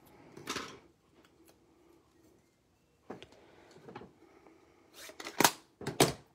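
Small craft scissors snipping a narrow strip of cardstock into a banner tip, with a few soft cuts and paper handling. Near the end come two sharp clacks, the loudest as the scissors are set down on the wooden desk.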